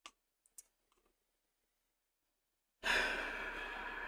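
Near silence with two faint clicks in the first second, then, near the end, a long breathy sigh from the painter.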